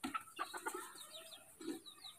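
Faint bird calls in the background: many short chirps that slide downward in pitch.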